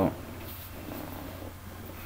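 A steady low hum under faint room noise, with no distinct event.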